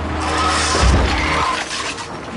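A small car jerked into sudden hard acceleration by a cable as a five-ton concrete block drops from a crane: a loud rush of noise with a heavy bang just under a second in.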